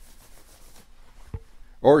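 Faint rustling handling noise in a pause between words, one short sharp click a little past the middle, then a man's voice starting near the end.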